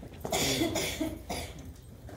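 A person coughing: a longer cough about a third of a second in, then two shorter coughs about a second in.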